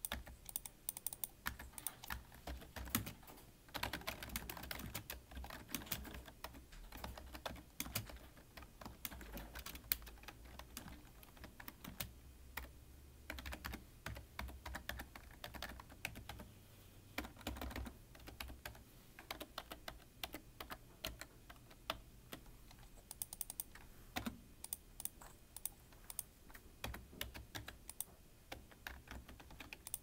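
Typing on a computer keyboard: rapid, irregular key clicks in quick runs with short pauses between them.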